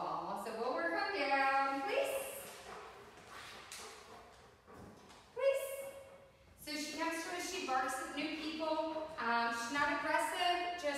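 A woman's voice talking in short phrases, words not made out, with pauses between them.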